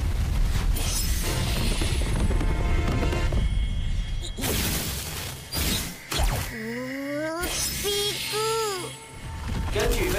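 Cartoon sound effects of a heavy rumble as a mass of fruit and vegetables rolls down a street, with loud rushing crashes over background music. A rising tone comes about six and a half seconds in, and a short rising-and-falling tone follows.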